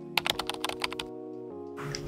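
Soft background music with a rapid run of about ten keyboard typing clicks in the first second; the music's chord changes about one and a half seconds in.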